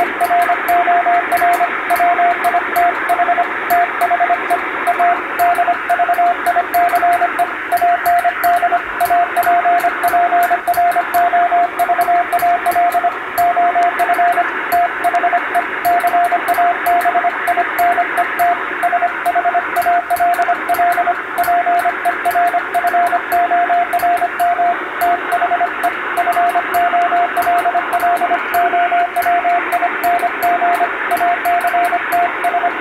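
Morse code (CW) on shortwave: a single mid-pitched tone keyed in a fast, unbroken stream of dots and dashes, half buried in a constant hiss of radio band noise.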